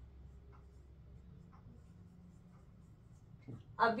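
Faint, scattered strokes of a marker pen writing on a whiteboard.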